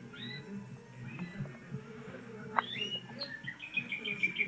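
Pet canary giving faint, scattered chirps and short call notes, then breaking into a quick run of repeated twittering notes near the end.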